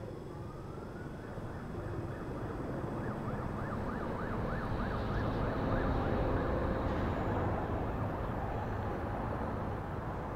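Distant emergency-vehicle siren over a steady low city-traffic rumble: the siren rises in pitch, then warbles quickly up and down for a few seconds, swelling slightly and fading again.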